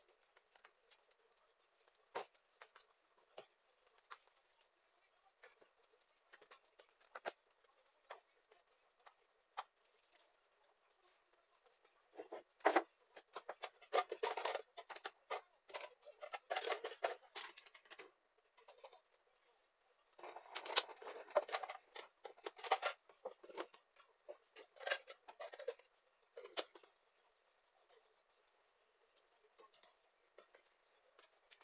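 Household things being handled on a table: scattered light clicks and knocks, then two stretches of busy clattering about halfway in and again a little later, as containers and a stainless kettle are picked up and set down.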